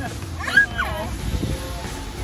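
A young child's high squeal of laughter that glides up and back down in pitch, over background music.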